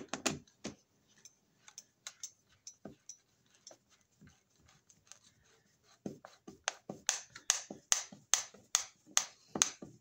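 A thin drywall screw being turned in by hand with a screwdriver through a plastic thermostat base into the wall: faint scattered clicks at first, then from about six seconds in a run of sharper clicks, about three a second.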